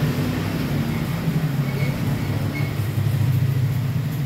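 Refrigerant vacuum pump running with a steady low hum, evacuating a new split air conditioner's refrigerant lines through the gauge hose before the R32 refrigerant is let in.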